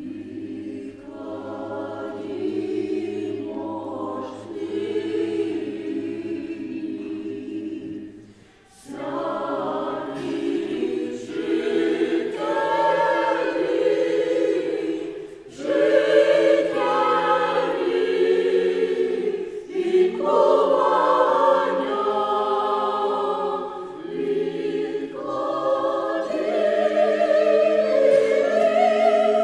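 Mixed choir of women's and men's voices singing unaccompanied in sustained chords, with a low note held under the first phrase. The phrases break for breath about eight and fifteen seconds in, and the singing grows louder after each break.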